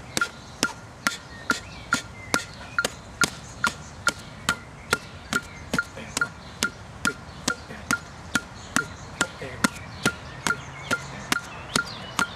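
Metronome app clicking steadily at 140 beats per minute, a short sharp tick on each beat. Boxing-glove punches land on a partner's gloves in time with the clicks, making some beats louder than others.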